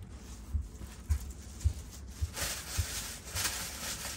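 Five soft, low thuds about half a second apart, then rustling of clothes and a plastic shopping bag as they are pushed into a suitcase, starting a little past halfway.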